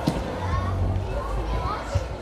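Children chattering and calling out in a large sports hall, with a sharp thump right at the start and another near the end.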